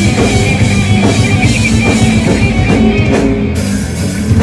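Heavy metal band playing live and loud: drum kit with cymbals, distorted electric guitars and bass guitar, in an instrumental passage without vocals. The cymbals' high wash drops out for a moment a little after three seconds in.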